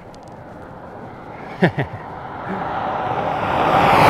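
A road vehicle approaching along the highway, its tyre and engine noise swelling steadily and loudest near the end as it passes close by.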